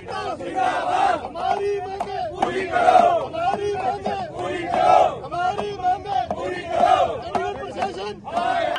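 A crowd of men shouting protest slogans together, in repeated rhythmic phrases.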